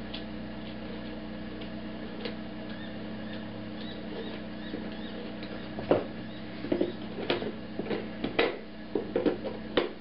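Faint ticks, then from about six seconds in a string of sharper, irregular clicks and knocks as the nut on a stomp box's jack socket is tightened and the wooden box is handled, over a steady background hum.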